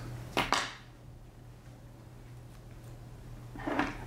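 A quick double snip of fly-tying scissors about half a second in, cutting off excess chenille at the hook, then a quiet stretch until a man's voice starts near the end.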